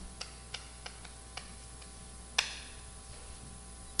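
Chalk tapping on a blackboard as words are written: a scattered series of short clicks, with a louder stroke about two and a half seconds in.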